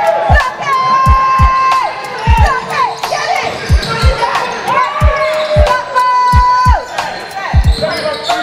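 A basketball dribbled on a hardwood gym floor, bouncing irregularly about every half second to second, with sneakers squeaking in short, high squeals on the court.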